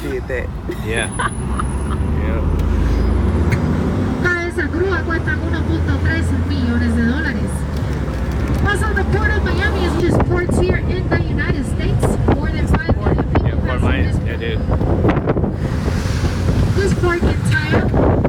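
A tour vehicle's engine running with a low rumble, under wind buffeting the microphone, with indistinct voices of people around.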